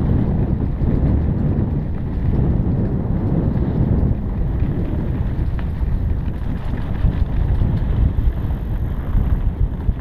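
Wind buffeting the microphone of a camera riding on a mountain bike, over a steady low rumble from the bike rolling along a dirt trail.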